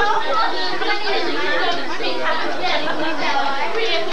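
Many children and adults chattering at once in a classroom: a steady crowd of overlapping voices, with no one voice standing out.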